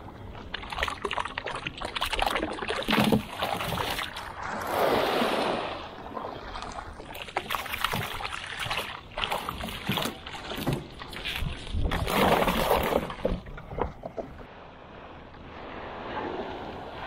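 Water splashing and sloshing at the side of a small skiff, in several louder rushes, with scattered knocks and clicks of handling in the boat.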